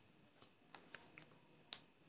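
A few faint taps of a stylus on a writing tablet, the sharpest about three-quarters of the way through as a full stop is dotted.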